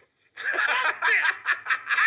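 A man laughing out loud, starting about a third of a second in after a brief hush.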